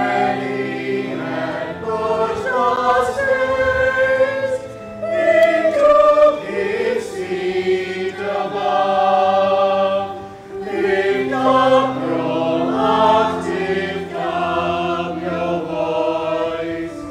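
A hymn sung by many voices together in a church, with long held notes over sustained low accompanying notes and a short breath between lines about ten seconds in.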